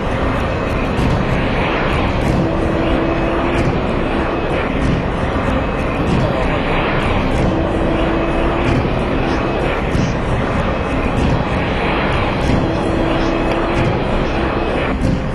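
Jet engines of a Boeing 727 airliner as it comes in to land: a loud, steady rushing noise throughout, with people's voices over it. A short steady tone sounds three times, about every five seconds.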